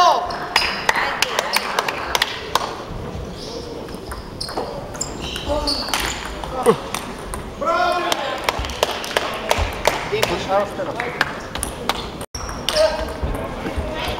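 Table tennis ball ticking off the bats and the table in quick rallies, many sharp clicks in a hall that echoes, with voices alongside.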